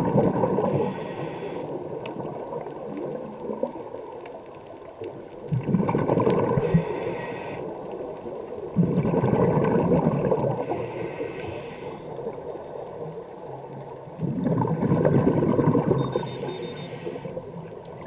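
Scuba diver breathing through a regulator underwater, about four slow breath cycles: each a bubbly, gurgling rumble of exhaled bubbles and a short high hiss of air drawn through the regulator.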